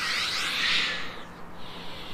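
A man breathing hard during a yoga flow: a long, forceful exhale lasting about a second, followed by a fainter breath.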